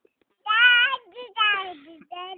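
A child's high voice singing a short, wavering phrase, starting about half a second in.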